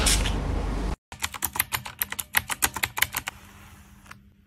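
Rapid, irregular light tapping or clicking, about ten sharp clicks a second, starting about a second in and stopping a little past three seconds.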